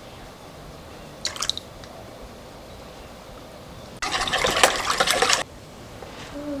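Wire whisk stirring in a plastic mixing bowl for about a second and a half near the end, stopping suddenly. A brief faint clink comes about a second in.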